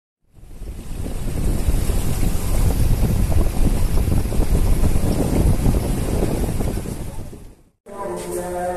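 Wind buffeting the microphone: a dense, rumbling rush of noise with no steady tone. It fades in over the first second and fades out shortly before the end.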